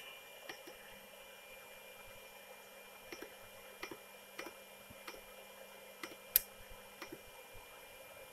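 Soft, scattered clicks of a finger pressing the front-panel buttons of a Renogy Rover 40A MPPT solar charge controller, one every second or so, with one louder click a little past six seconds in, over a faint steady hum.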